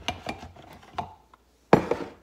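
Ceramic coffee mug handled against the plastic base of a small drip coffee maker: a few light clicks and scrapes, then one sharp clunk of the mug near the end.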